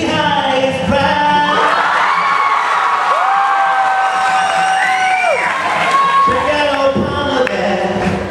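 Live acoustic guitar and a male voice. Then the guitar drops out for a few seconds while several voices hold long notes at different pitches, some gliding up or down at their ends. The guitar comes back in near the end.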